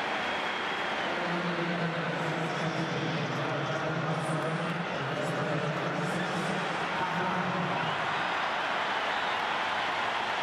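Large stadium crowd of hurling supporters cheering after a score: a steady roar of many voices, with a sustained low drone of voices rising out of it from about a second in until about eight seconds.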